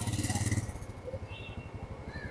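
Street background noise with a vehicle engine running, loudest in the first half second and then settling to a quieter steady traffic hum, picked up on an outdoor live-report microphone.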